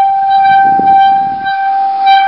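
Metal water gong sung by rubbing with wet hands: a loud, steady tone with several higher overtones held above it, swelling and easing slightly in loudness.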